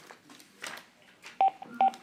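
Two short telephone keypad tones on the conference phone line, about half a second apart near the end, as the call's recording is being stopped.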